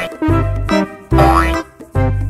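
Playful background music: short repeated bass notes with a rising sliding sound about a second in.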